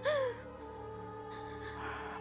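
A brief tearful gasp from a crying girl right at the start, trailing off with a falling pitch, then soft background music holding long, steady notes.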